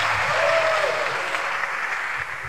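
Concert audience applauding, with a brief whoop about half a second in. The applause slowly fades.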